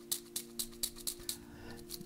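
Wooden fortune sticks clattering in their cylinder as it is shaken, a run of light clicks about five a second. A held chord of background music sounds beneath.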